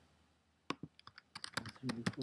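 Typing on a computer keyboard: a quick run of light key clicks starting under a second in, as constructor arguments are typed into a line of code.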